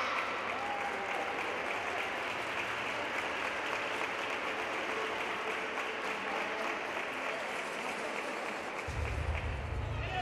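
Audience applauding steadily, with a low rumble coming in near the end.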